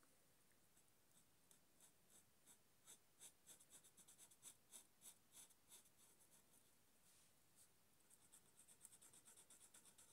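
Marker pen nib stroking across paper while colouring in: faint, short scratchy strokes, a few a second, coming quicker near the end.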